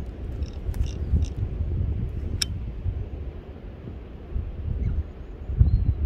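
Wind buffeting the microphone in a steady low rumble, with a few small clicks, the sharpest about two and a half seconds in.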